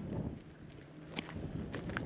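Wind rumbling on the microphone outdoors, with a few footsteps crunching on a stony shoreline path, sharp clicks about a second in and again near the end.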